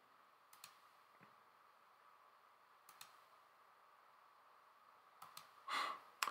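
Faint computer mouse clicks, a few single clicks spread out over low room tone with a faint steady hum. Near the end comes a short, louder rush of noise.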